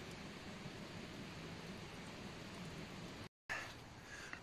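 Faint, steady trickle of coffee being poured from a pot into a plastic mug, cut off suddenly a little after three seconds in.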